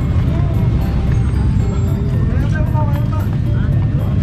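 Busy street-market ambience: a steady low rumble of traffic under a murmur of voices, with music that has a steady beat.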